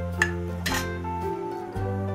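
A metal spoon clinks twice against a steel pot within the first second, over background music.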